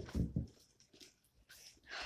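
A child sliding down a small plastic garden slide: a few low bumps in the first half-second, then quiet, and a short voiced sound from him near the end.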